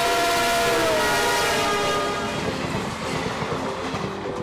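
Electric locomotive's horn sounding as it passes, its several-note chord dropping in pitch about a second in and fading, leaving the running rumble of the train.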